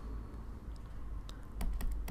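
Light clicks of a stylus tapping on a drawing tablet as handwritten marks and dots are put down, a handful of them in the second half, over a low steady hum.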